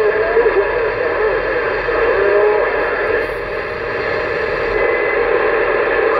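Uniden Grant LT CB radio's speaker putting out steady static hiss on an open channel, with faint whistling tones that wobble and glide in pitch beneath it.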